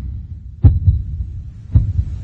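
Heartbeat sound effect: deep double thumps, about one beat a second, two beats falling in this stretch.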